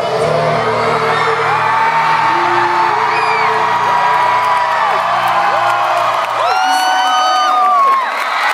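Live concert music in an arena, with the crowd whooping and singing along over it. About six seconds in the band's low end stops, and long high whoops and cries from the crowd carry on alone.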